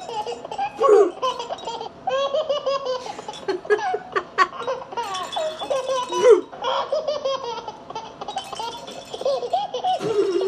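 High-pitched laughter in repeated bursts, giggles and belly laughs, from a woman playing with a toy ball.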